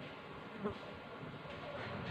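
Faint steady buzzing hum, with one light tap about two-thirds of a second in.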